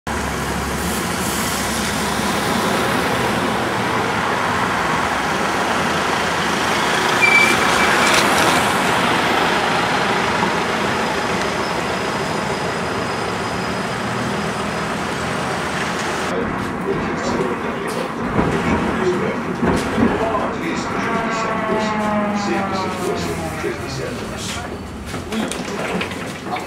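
Dense city traffic noise while an LM-2008 low-floor tram approaches. After a cut, the tram's traction drive gives a whine that falls steadily in pitch for a few seconds near the end as the tram brakes to a stop.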